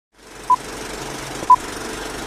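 Film-leader countdown sound effect: a short, high beep once a second, twice here, over a steady crackly hiss.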